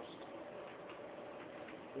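Quiet room tone with faint ticking.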